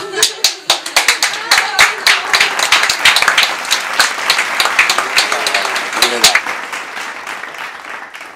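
Applause from a small audience, dense hand-clapping with voices mixed in, thinning out and dying away near the end.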